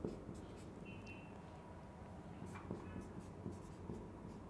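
Faint strokes of a marker pen writing on a whiteboard, with a brief high squeak about a second in.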